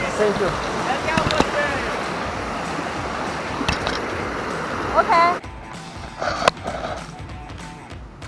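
Small stream rushing over rocks, with voices over it; the water sound cuts off abruptly about five seconds in.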